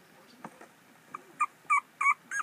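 Newborn puppy squeaking: three short, high whimpers in the second half, the first one faint.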